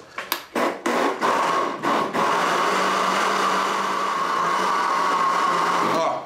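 Countertop blender pulsed in several short bursts, then running steadily for about four seconds, blending a hot mixture that is softening its plastic jar.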